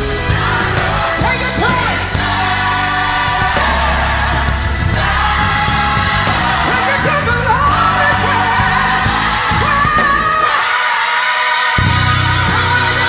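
Old-school gospel song: a singing voice over an instrumental backing with a steady bass line. The bass and low end drop out for about a second near the end, then come back in.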